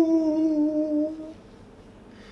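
A man singing one long held note that drifts slightly lower and stops about a second and a half in.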